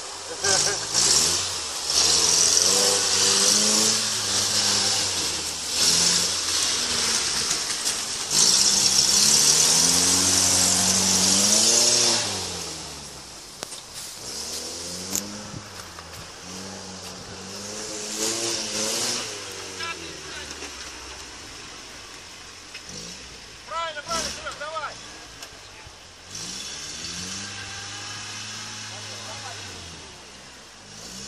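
UAZ off-road vehicle's engine revving up and down over and over as it works through deep sand on a trial course. A loud hiss lies over the engine for the first twelve seconds or so, and after that the engine sounds quieter.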